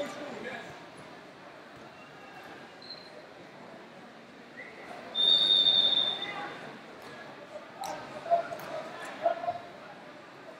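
Busy wrestling-tournament hall ambience: a referee's whistle from a nearby mat blown once for about a second, roughly five seconds in, with scattered shouts from coaches and spectators.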